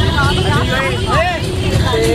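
Several voices whooping and shouting in rising and falling calls inside a moving coach bus, over the bus's steady low engine rumble.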